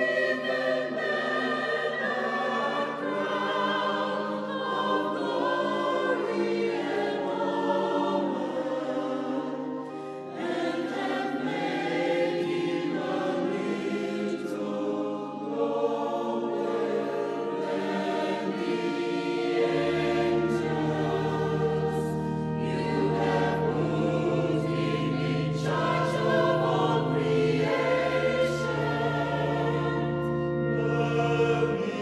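Mixed church choir singing a Christmas carol in parts, with held low bass notes underneath that drop deeper about two-thirds of the way through.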